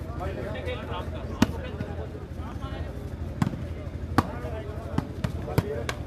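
A volleyball struck by players' hands and arms during a rally: four sharp slaps, the loudest about a second and a half in, the others a few seconds later, over a murmur of crowd voices.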